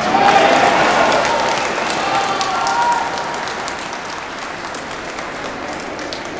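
A seated audience in a large hall applauding, starting suddenly, loudest in the first second or so and dying down after about three seconds, with a few voices calling out over it.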